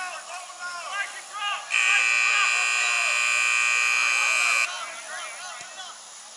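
A timekeeper's horn gives one steady, high-pitched blast of about three seconds, starting a little under two seconds in and cutting off sharply: the rugby sevens signal that time is up. Spectators shout before and after it.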